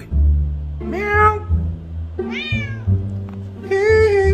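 Domestic cat meowing three times, each call about half a second long, in answer to its owner. Plucked bass and cello music plays underneath.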